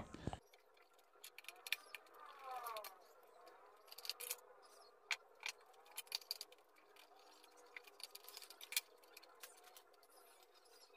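Faint, scattered small clicks and light rubbing as insulated electrical wires are handled, twisted together and pushed toward a circuit breaker's terminals. There is a brief wavering scrape about two to three seconds in.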